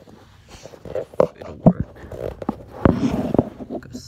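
Handling noise as a phone is pushed into place and covered with clothing: fabric rustling, broken by a few sharp knocks and bumps against the phone, the loudest a little after the middle.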